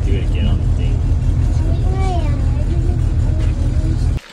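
Steady low rumble of a boat under way, its motor and the passage over the water running without change, with faint voices in the background.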